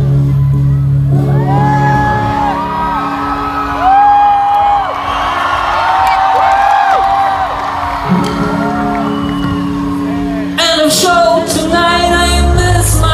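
Indie-pop band with keyboards, guitars and drums playing live through a festival PA, heard from within the crowd. The deep bass drops out about two seconds in while singing and crowd whoops carry on, the bass returns past the middle, and the full band comes back in loudly near the end.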